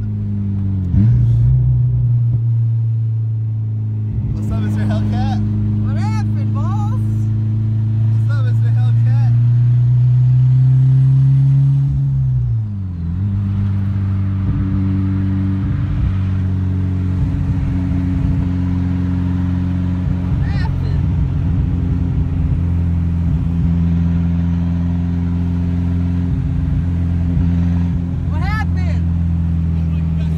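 Car engine heard from inside the cabin, pulling hard with its pitch rising slowly for about twelve seconds. The pitch then drops suddenly and the engine runs on steadily at a lower pitch.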